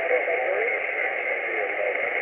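Single-sideband shortwave signal on 20 metres through an Icom IC-703 transceiver's speaker: steady band hiss with a weak, wavering voice underneath that thins out after about a second.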